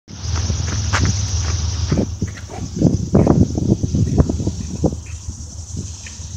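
Footsteps crunching irregularly on gravel, heaviest in the middle of the stretch, over a steady low rumble.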